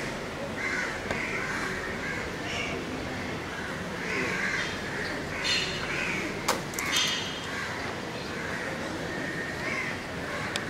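Crows cawing over and over in short calls, with a few sharp clicks near the middle.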